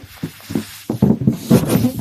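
Helium hissing out of a balloon's neck as it is breathed in, in several short, uneven pulls.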